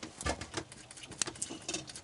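Bearded dragon snapping up a superworm and chewing it: a run of faint, irregular little crunching clicks.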